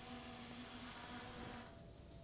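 Faint steady buzz of the NASA GL-10 drone's propellers, a hum of a few held pitches; the lowest of them drops away near the end.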